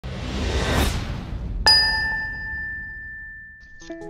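Intro sound effect: a whoosh swells and fades, then about one and a half seconds in a single bright chime is struck and rings out, dying away over about two seconds. Music starts just before the end.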